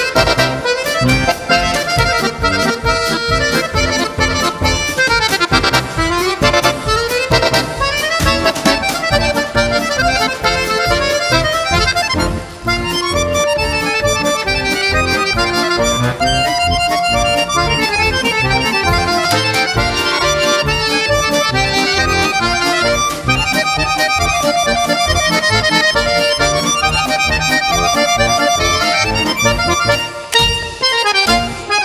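Instrumental accordion music: fast melodic runs over a steady rhythmic beat, with a brief held note a little past the middle.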